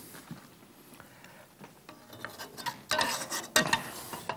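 Metal serving spoon scraping in a pot and clinking on a china plate as pasta with ragout is dished up: quiet at first, then a few scrapes and clinks in the second half, the sharpest near the end.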